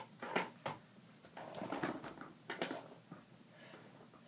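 Handling noise from small plastic craft items: a few light clicks and taps, with a short stretch of soft rustling in the middle, as a loom hook and rubber bands are handled.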